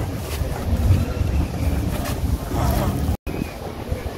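Wind buffeting a phone microphone: an uneven low rumble, with faint voices in the background. About three seconds in, the sound drops out for an instant.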